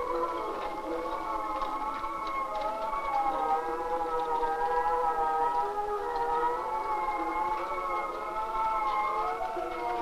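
Several drawn-out, siren-like tones at different pitches sounding together in a chord, drifting slowly in pitch, sagging a little through the middle and rising again near the end.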